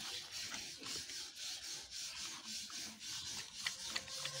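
Rottweiler puppy panting, a steady run of breathy rasps that swell and fade about twice a second.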